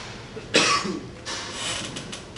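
Chalk scratching on a blackboard in a series of short strokes as words are written. The loudest is a sudden burst about half a second in.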